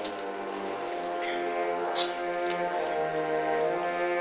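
A beginning school concert band of woodwinds and brass playing held chords, with one short sharp strike about two seconds in.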